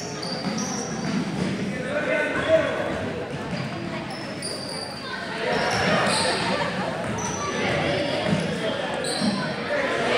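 Basketball game in a gym: the ball bouncing on the court and short high sneaker squeaks over spectators' chatter, echoing in the large hall.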